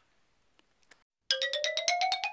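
After near silence, a music sound effect starts about a second in: a fast run of short repeated notes, about fourteen a second, climbing steadily in pitch.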